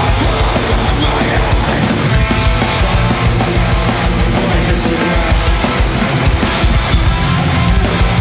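Metalcore band playing live at full volume: distorted electric guitars over drums.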